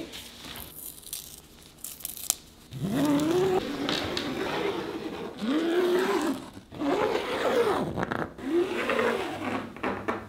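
Scraping and rustling of heavy fabric being handled and marked with chalk along a ruler. From about three seconds in, a voice holds several long notes that rise and fall, louder than the handling.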